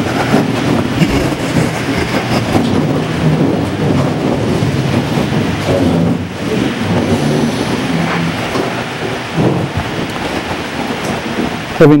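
Continuous shuffling, rustling and creaking of people moving to kneel for prayer, with some low murmuring.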